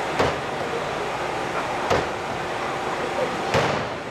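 Bread dough being slapped down hard onto a steel-topped counter three times, roughly every second and a half, in slap-and-fold hand kneading of a fresh, still-weak dough. Each slap is a short, sharp smack.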